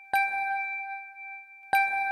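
A bell struck twice, about a second and a half apart, each strike ringing on with a clear, steady tone.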